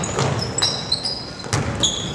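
Basketball shoes squeaking on a hardwood gym floor, a series of short high squeaks, with the thud of a dribbled basketball about twice, echoing in the gym.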